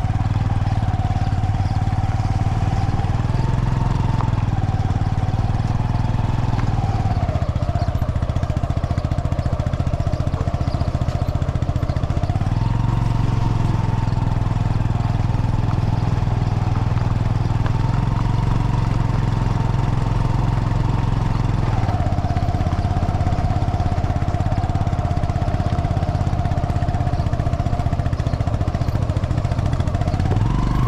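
Vehicle engine running at low speed close by. Its pitch shifts up and down to a new steady note every few seconds with the throttle, over a constant low rumble.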